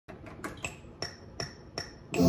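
Quiet, ringing metallic percussion hits from a beat: sharp strikes that each ring at the same high pitch. They come irregularly at first, then settle into an even pulse about every 0.4 s.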